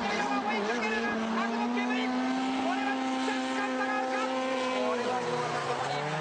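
Drift cars' engines held at high revs through a tandem slide, a steady engine note that drops lower about five seconds in.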